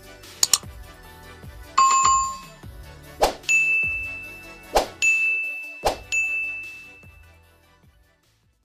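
Subscribe-button animation sound effects over background music: a quick double click about half a second in, a bell ding about two seconds in, then three sharp pops, each followed by a held high chime. It all fades out near the end.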